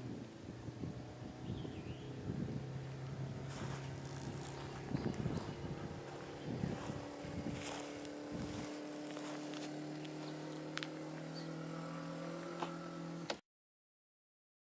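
Power convertible top of a 1959 Chevrolet Impala being raised: the hydraulic pump motor hums steadily, and its hum shifts to a higher pitch about two-thirds of the way through as the load on the top changes, with light clicks and creaks from the folding frame.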